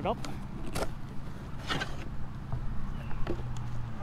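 Cardboard shipping box being pulled open by hand: a few short scrapes and rustles of the cardboard flaps, over a steady low hum.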